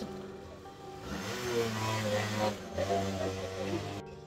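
Small motor scooter engine running as the scooter rides off. A steady hum comes in about a second in and dips briefly near the three-second mark. Background music plays throughout.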